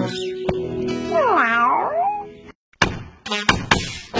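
A cartoon cat meows once, a long call that dips in pitch and rises again, over light background music. A few sharp knocks follow near the end as the music starts up again.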